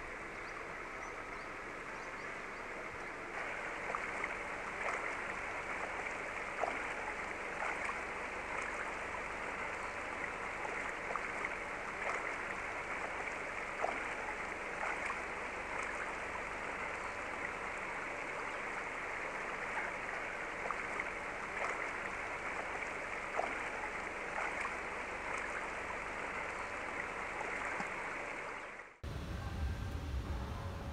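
Steady rushing outdoor ambience, like running water, with faint scattered ticks; it grows a little louder a few seconds in and cuts off abruptly near the end.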